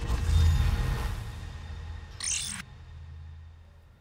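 Title-card transition sound effect: a whoosh with a deep bass rumble that peaks about half a second in and slowly fades, with a short glitchy digital crackle just past two seconds in.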